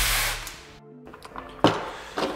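A hissing rustle of packaging fades out in the first half second. After a brief dropout, soft background music plays, and a light knock near the end is a small cardboard box being set down on a table.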